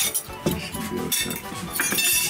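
A metal knife and china plates clinking a few times as slices of mamaliga are cut and served, with background music playing.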